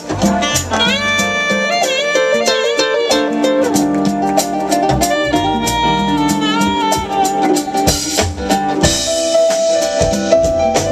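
Live smooth jazz band playing, a saxophone carrying a wavering melody over drum kit, percussion and guitar.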